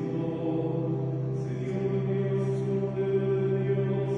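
A priest's male voice chanting a liturgical text, the melody held mostly on one reciting pitch while the words move on.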